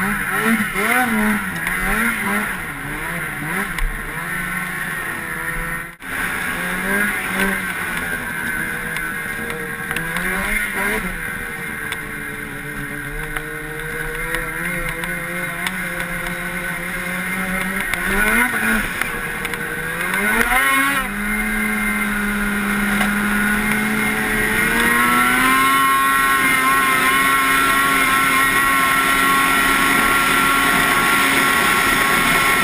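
Ski-Doo snowmobile's two-stroke engine, heard from on the sled, revving up and down over and over as it rides through drifts, with a brief dropout about six seconds in. Past the middle it revs up sharply twice, then settles into a steady high-speed pull whose pitch steps up once more and holds.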